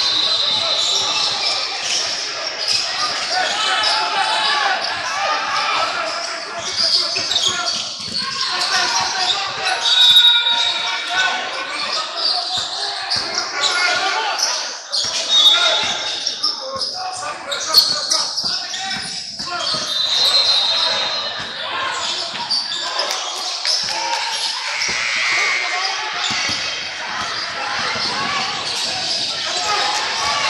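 Game sounds of a basketball game in a large echoing gym: a basketball bouncing on the hardwood court and players' feet on the floor, with indistinct voices of players and spectators calling out.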